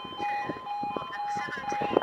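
Railway level crossing warning alarm sounding a rapid, evenly pulsing high beep, with scattered light clicks.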